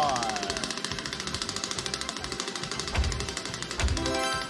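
Top-slot spinning effect on a casino game show: a rapid, even ticking over music, with two low thuds about three and four seconds in as the reels come to rest on a 20x multiplier. A voice exclamation trails off right at the start.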